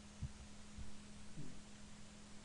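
Faint steady electrical hum on the recording, with a few soft low thumps.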